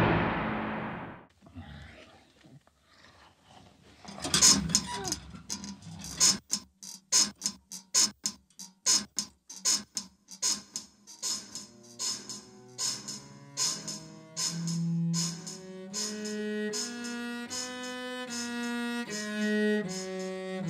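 A loud hit dies away at the start. A little later come rhythmic creaks or knocks, about two a second, and about halfway through a cello joins them, playing slow bowed notes in time with the beat.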